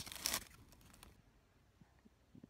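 Aluminium foil wrapper crinkling briefly in the first half-second as the quesadilla is lifted out of it, then fading away.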